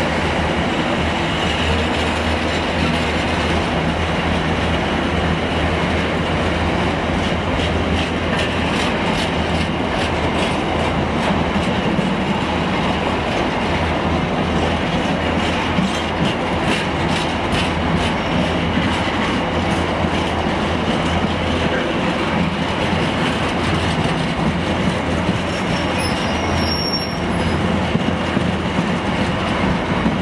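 A freight train of empty container flat wagons rolls past, its wheels clicking over the rail joints with some wheel squeal, over a steady low diesel hum. Near the end a High Speed Train with a Class 43 power car draws into the platform with a brief high-pitched brake squeal.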